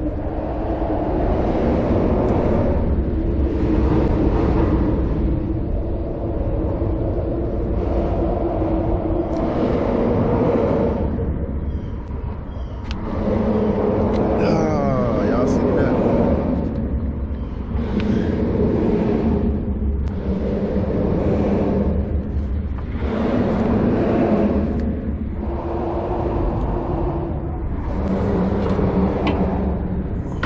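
Indistinct, muffled talk that comes and goes over a steady low rumble.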